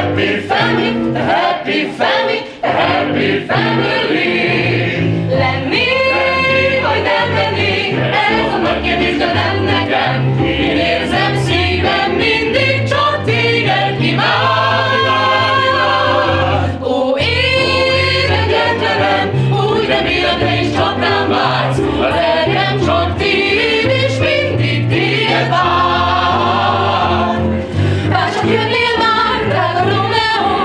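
A small group of women and men singing together in harmony, a low part moving underneath the voices throughout.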